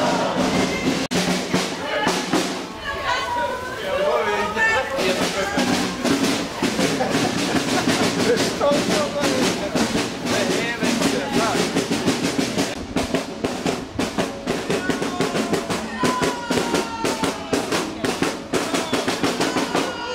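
Marching snare and bass drums beating a steady rhythm with rolls, the strikes coming thick and regular from about five seconds in, with people talking over them.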